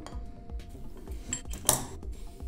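Handling noise from an XLR cable and its metal connector being picked up and moved on a workbench: soft clicks, then one sharper metallic clink about three-quarters of the way through.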